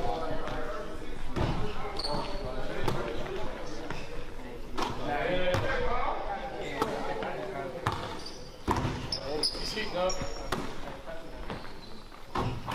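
Basketballs bouncing on a hardwood gym floor: scattered sharp thumps every second or two, irregularly spaced, under indistinct voices chatting.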